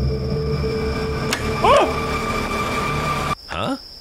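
A low, steady ominous drone from the horror animation's soundtrack, with a single click a little over a second in and a brief gliding tone just after. The drone cuts off suddenly near the end.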